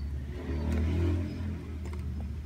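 A motor vehicle's engine passing by: a low rumble that swells about half a second in and fades after about a second, over a steady low hum.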